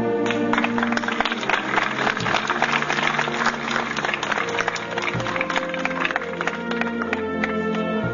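Band music with slow, held notes, under a dense patter of applause that thins out near the end.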